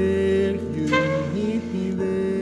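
Saxophone holding long melody notes over electric keyboard chords, with a new, brighter sax note about halfway through.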